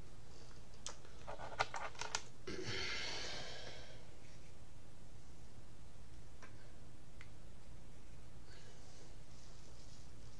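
A cluster of light clicks and taps from small objects being handled, then a breathy exhale lasting about a second and a half, with a couple of fainter clicks and a softer breath later, over a steady low hum.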